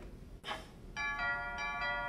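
A bell-like chime from the film's soundtrack: several clear ringing tones come in one after another about a second in and ring on.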